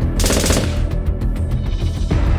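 Gunshot sound effect: a rapid burst of shots just after the start, lasting about half a second, over background music with a heavy bass.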